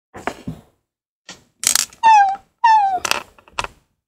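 Two short dog-like whimpers, each falling in pitch, with breathy huffs before and after them and a couple of small knocks at the start.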